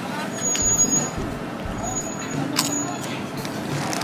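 Street background of traffic and people's voices, with a few crisp crunches as a prawn cracker is chewed close to the microphone.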